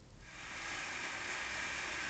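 A gap between songs from the TV: an even hiss of background noise swells up over the first half second and then holds steady, with no music.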